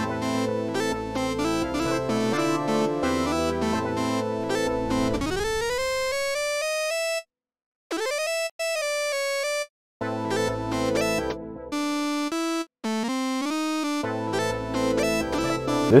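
A synthesizer beat playing back: layered chords and bass for the first few seconds, then a solo Roland Zenology synth lead playing a melody alone, with notes that slide up in pitch and short silent gaps between phrases. The fuller mix comes back near the end.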